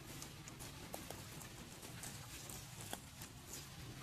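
Faint scattered clicks, taps and crackles of dry leaves and twigs as monkeys move over leaf litter and branches, with a few sharper ticks about a second in and just before three seconds.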